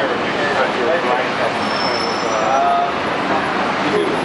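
Steady traffic noise of a busy city street, with buses and cars passing, and voices of passers-by talking nearby.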